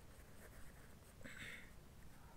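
Ballpoint pen scratching faintly on paper as a word is written by hand, with a slightly louder stroke about a second and a half in.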